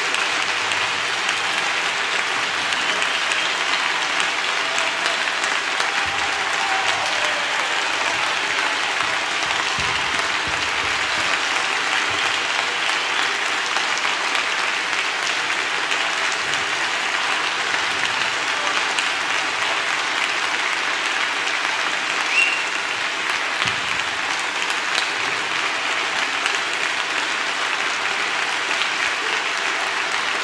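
Concert audience applauding steadily and without a break.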